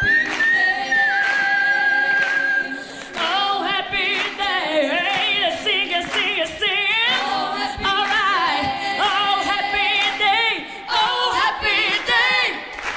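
A group of women singing a cappella in close harmony, several voices with vibrato moving together. It opens with one long high note held by a single voice before the group comes in about three seconds in.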